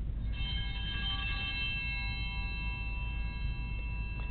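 Altar bell struck once about a third of a second in, ringing on with a slow fade, rung at the elevation of the host during the consecration. A low background hum lies under it.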